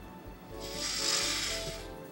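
Soft background music with sustained tones, joined about half a second in by a soft hiss that swells and then fades near the end.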